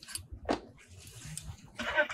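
A brief human vocal sound about half a second in, then a longer, breathier one near the end, over a low background hum.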